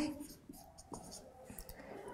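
Dry-erase marker writing on a whiteboard: a few faint, short scratchy strokes and ticks.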